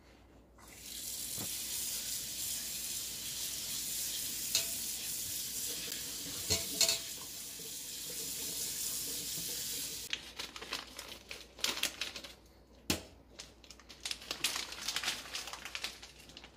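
Kitchen tap running steadily onto egg noodles in a stainless steel colander in a metal sink while hands work the noodles under the stream. The water stops about ten seconds in, followed by scattered clicks and knocks of handling, with one sharper knock a few seconds later.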